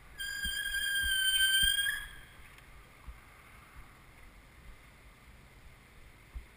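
Bicycle brakes squealing as the bike slows: one steady high-pitched squeal, about a second and a half long, that ends with a brief upward flick. Low road and wind rumble with faint thumps lies underneath.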